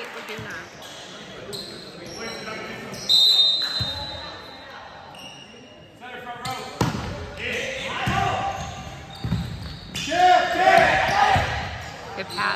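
Volleyball being played in an echoing gym: a short high whistle about three seconds in, the serve struck with a sharp smack about seven seconds in, then ball contacts and players shouting through the rally.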